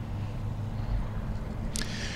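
Steady low rumble with a faint hiss, the outdoor background noise of a phone recording beside a highway, with a faint low hum.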